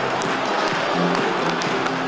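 Stadium crowd celebrating a goal, with cheering and clapping, mixed with music.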